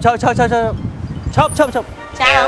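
Speech: a voice speaking two short phrases, with a thin, high, whistle-like tone near the end.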